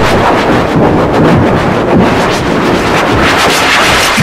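Very loud, heavily distorted digital audio effect: a dense, noisy crackle with rapid stutters and no clear pitch, from an effects-processed logo soundtrack.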